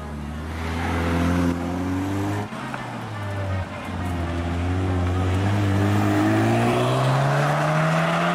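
Car engines driven hard through a tight hairpin: the revs climb, break off about two and a half seconds in, then a second car's engine climbs steadily in pitch as it accelerates away.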